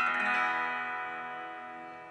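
Acoustic guitar with all its strings strummed once together, the chord ringing on and slowly fading away.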